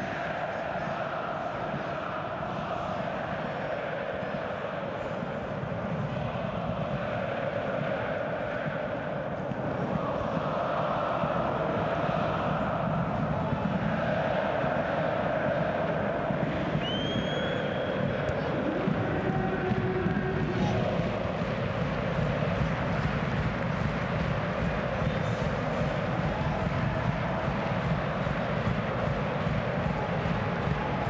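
Football stadium crowd singing and chanting together in a steady roar that swells a little about ten seconds in, with a short rising whistle from somewhere in the ground a little past halfway.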